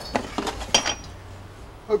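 Metal clinks and knocks as Harley-Davidson Knucklehead cylinder heads and parts are shifted about on a workbench. There are a few sharp clinks in the first second, one ringing briefly, then a lull.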